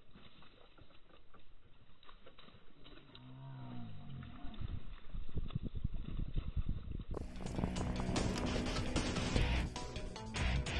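Dull, muffled water splashing from a hooked bass thrashing at the surface beside a kayak, with a short low moaning glide about three seconds in. Background music comes in about seven seconds in and is the loudest sound by the end.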